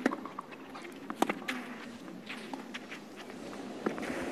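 Tennis rally on a clay court: a few sharp pops of the ball struck by rackets, the loudest about a second in, with the players' feet scuffing and sliding on the clay between shots.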